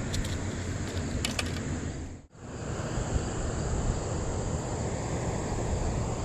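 Steady outdoor noise with a constant high insect drone, and a few sharp clicks in the first second and a half. The sound drops out briefly a little over two seconds in, at a cut in the recording.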